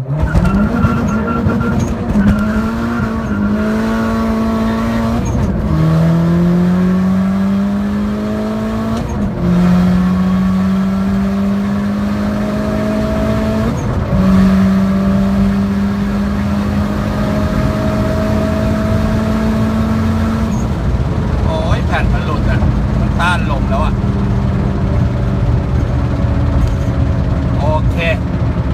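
Turbocharged Honda Jazz (GK) four-cylinder with a manual gearbox, heard from inside the cabin under hard acceleration on 0.9 bar of boost: the engine note climbs through the revs and drops in pitch at each of several upshifts, then holds steady at high speed.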